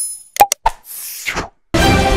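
Subscribe-button animation sound effects: a bell chime ringing out, three quick sharp mouse-style clicks, and a swoosh. Theme music starts abruptly near the end.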